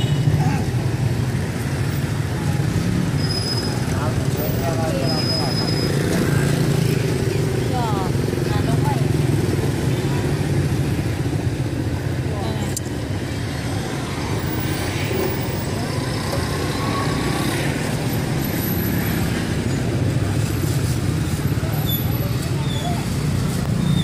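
Street ambience: a steady low rumble of road traffic and motorbikes, with people talking in the background.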